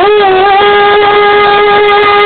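A singer holding one long, steady note, sliding up into it at the very start, amplified through a stage sound system.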